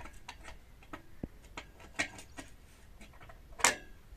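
Scattered light clicks and taps of hands and tools working at the flange joint of a tubewell's PVC delivery pipe, with a louder clatter near the end.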